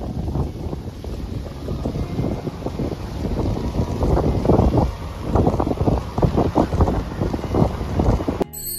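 Strong wind buffeting the camera microphone: a loud, low rumble that swells and drops with each gust.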